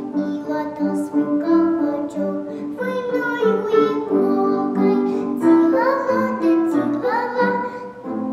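A five-year-old girl singing a children's song to piano accompaniment. Her voice slides upward on a couple of notes near the end.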